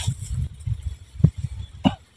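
Baby macaques giving short, sharp squeaks, two in the second half, over a low rumble of wind on the microphone.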